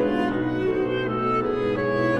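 Classical chamber music from a clarinet, cello and piano trio, with several held notes sounding together at a steady level.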